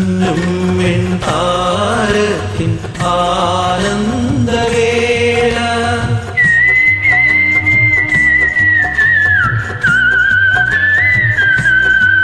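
Instrumental interlude of a Malayalam film-song karaoke backing track: a high, whistle-like lead melody with vibrato over a steady rhythm. In the second half the lead holds long notes, slides down and climbs back up.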